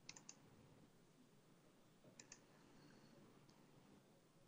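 Near silence with a few faint, sharp clicks: three quick ones at the start, two more a little after two seconds in, and a fainter one near the end.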